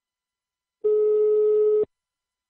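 Telephone ringback tone on an outgoing call: one steady beep of about a second, starting about a second in and cutting off sharply. It is the sign that the called phone is ringing at the other end.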